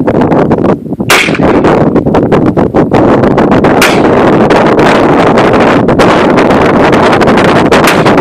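Semi-automatic AR-15 rifle fired in single, deliberate shots, about three of them a few seconds apart, over heavy wind noise on the microphone.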